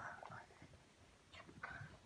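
A small child's faint short vocal sounds, once at the start and again just after midway, with one held high note.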